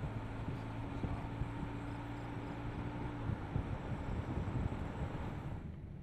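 Steady road and engine noise of a moving van, with a low engine hum that stops a little past halfway; the noise fades near the end.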